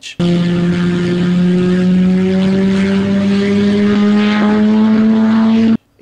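A Wankel rotary engine running at high revs, a steady loud note that rises slowly in pitch; it starts abruptly and cuts off suddenly near the end.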